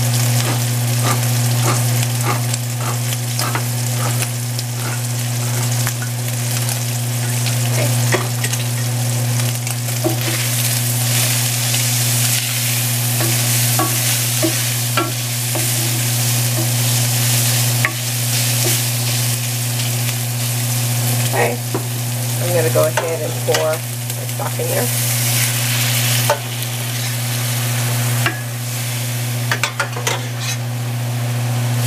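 Beef chunks sizzling as they brown in an enameled cast-iron pan, stirred and scraped with a wooden spoon in quick regular strokes at first, then more irregularly. A steady low hum runs underneath.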